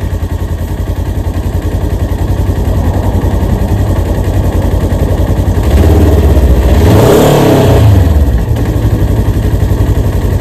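Lifted Polaris side-by-side's engine idling with a rapid low pulse, revved once about six seconds in, the pitch rising and falling back over about two seconds.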